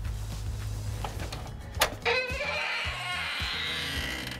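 An aluminium-framed glass sliding door is unlatched with a sharp click, then grates open along its track for nearly two seconds, over background music.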